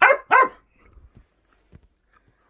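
A dog barking twice in quick succession: two short, sharp barks right at the start, then quiet.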